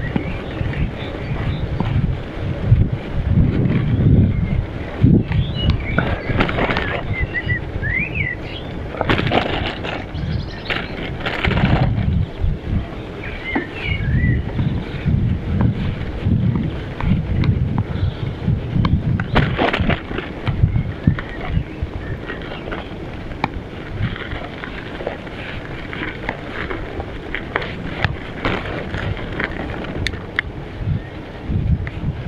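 Wind buffeting an action camera's microphone on a moving bicycle, rising and falling in gusts, with scattered rattles and knocks from the bike over a rough lane. A few short bird chirps come through briefly, about a quarter and again about half way through.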